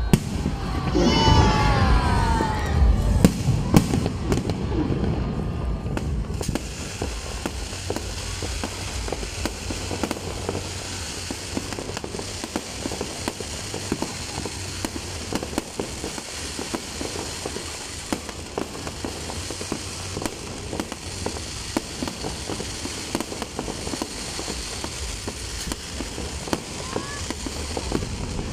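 Aerial fireworks going off: a few sharp bangs in the first few seconds, then a dense, continuous crackle of many small pops from crackling stars.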